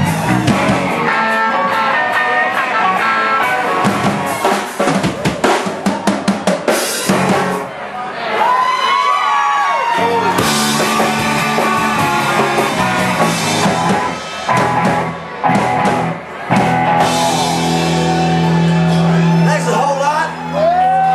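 Live rock band playing on electric guitars, electric bass and drum kit, with a quick run of drum hits in the middle and long held chords near the end.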